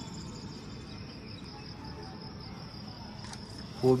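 Insects chirring steadily in one continuous high-pitched drone, over a low, even rumble.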